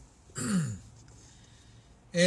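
A man clearing his throat once: a short, rough sound sliding down in pitch, about half a second in.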